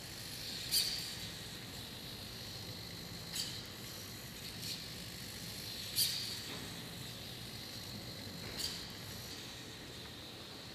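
Servo-driven robotic arm of the Last Moment Robot stroking a forearm, giving short high squeaks about every two and a half to three seconds over a faint steady hiss.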